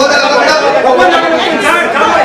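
A crowd of people talking over one another at once in a large, echoing room: a loud tangle of argumentative voices.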